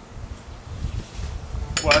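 Light clinks of cut stainless steel pieces handled on a metal-topped workbench, over an irregular low rumble.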